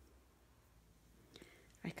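Near silence: low room hum, with a faint breath-like sound about one and a half seconds in and a spoken word starting at the very end.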